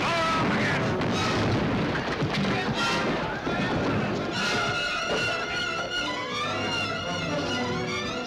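A loud cannon blast right at the start, followed by a few seconds of noisy rumble and crash, all under orchestral film music that carries on alone from about four seconds in.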